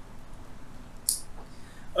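Quiet room tone in a small room, with one short high hiss about a second in.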